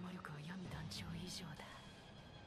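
A faint, low voice speaking quietly, from the anime episode's dialogue playing under the reaction.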